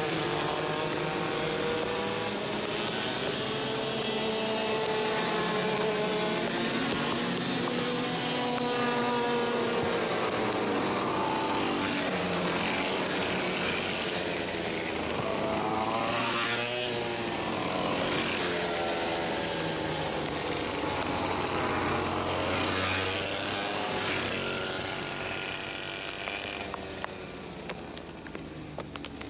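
Several IAME X30 125cc two-stroke kart engines running at part throttle on the slow-down lap after the finish. The karts pass one after another, each engine note rising and falling as it goes by. The sound fades somewhat near the end.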